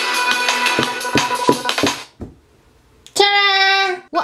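Specdrums app-connected rings playing instrument sounds as fingers tap coloured pads: a dense run of melodic notes with a few sharp percussive hits. The notes stop about halfway through, and after a short gap a single held note sounds near the end.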